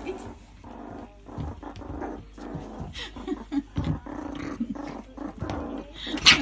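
Pet raccoon and meerkat squabbling over a piece of cucumber: rough growls in short, uneven spurts.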